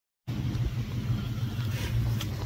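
A steady low rumble, like a motor or engine running, with faint outdoor background noise, starting a moment in after a brief silence.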